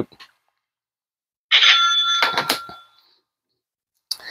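After about a second and a half of dead silence, a short bell-like ring with a few clear pitches sounds for about a second, with a few sharp clicks in it, then fades away.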